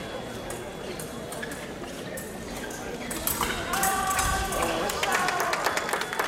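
Sports-hall hubbub of many voices with scattered sharp clicks, the voices growing louder and clearer from about three seconds in.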